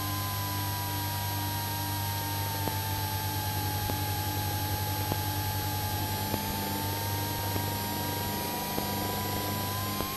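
A Citabria's engine and propeller heard from inside the cabin during a spin: a steady drone with a whining tone that sinks in pitch over the first few seconds, holds low, then climbs back near the end.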